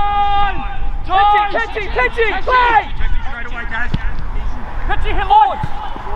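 Men shouting on a football pitch: one long held call at the start, then a run of short shouts and another call near the end, with no clear words.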